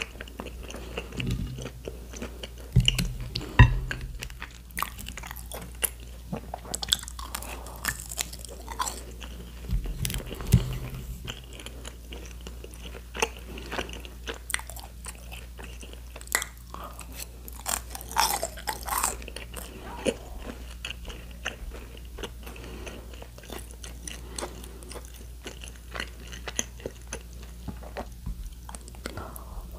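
Close-miked chewing and biting of crispy fried food and tteokbokki, with crunchy crackles and many small sharp clicks among steady chewing. A few louder low knocks come in the first dozen seconds.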